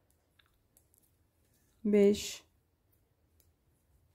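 Faint, scattered clicks of metal-tipped circular knitting needles as stitches are worked. One short spoken word about two seconds in is louder than the clicks.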